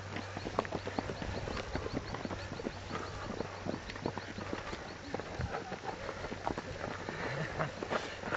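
Footsteps of several fell runners coming up a dry, hard-packed dirt path: many irregular footfalls throughout, over a steady low hum.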